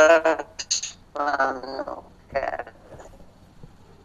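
A man's voice over a bad phone line, garbled and breaking up into short distorted fragments, the connection cutting in and out. After about three seconds it drops to a faint line hiss.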